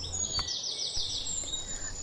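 A songbird singing in the forest: a quick run of high, repeated falling notes, over a thin, steady high whistle.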